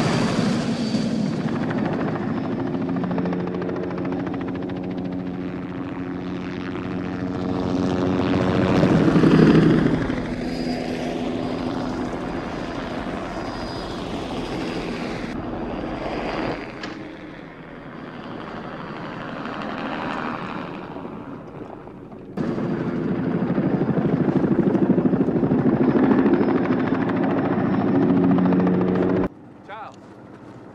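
A helicopter's turbine engine and rotor running as it flies low and close, with a thin high turbine whine over a steady low drone. It swells to its loudest about nine seconds in. The sound drops and returns abruptly at scene cuts later on.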